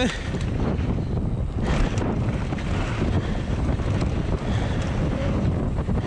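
Wind buffeting the camera microphone as a mountain bike rolls fast down a dirt trail, with tyre noise and bike rattle. A knock about two seconds in, as the bike comes down off a small drop.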